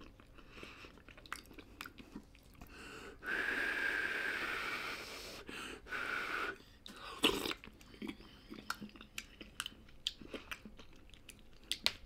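A person eating spoonfuls of ground-meat soup close to the microphone: wet chewing and lip-smacking with many small mouth clicks. A long airy hiss with a faint whistle comes about three seconds in, a shorter one near six seconds, and a louder mouth noise just after seven seconds.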